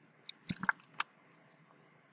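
A man drinking from a water bottle: a quick cluster of swallowing gulps and small mouth and bottle clicks, four or five of them within about the first second, then quiet.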